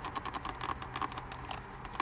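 Microfiber towel wiping polish residue off glossy piano-black plastic trim: a quick run of light rubbing scuffs.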